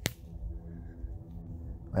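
Wind buffeting the microphone in a low, uneven rumble, with a single sharp click right at the start.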